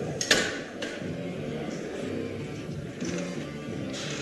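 Two sharp metallic knocks from a loaded Eleiko barbell and squat rack within the first second, over faint background music in the hall.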